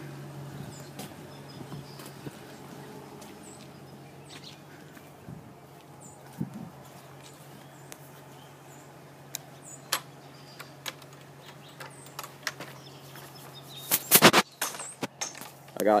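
Outdoor ambience with a steady low hum and scattered faint clicks and ticks from a hand-held phone being carried. A short loud burst of noise comes near the end.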